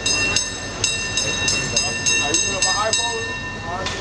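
A bell clanging in quick repeated strikes, about three a second, that stop about three seconds in. Street voices are heard behind it.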